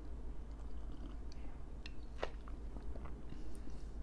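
Faint sipping and swallowing of hot cocoa from a mug, still pretty hot, over a steady low hum, with one sharper short sound a little past halfway.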